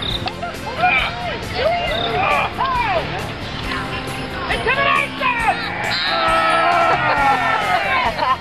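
Group of children's voices shouting and calling out together, with a drawn-out shout held from about six seconds in.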